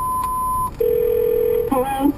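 Telephone line tones as the call cuts off: a steady higher beep lasting just under a second, then after a short gap a steady lower tone for about a second.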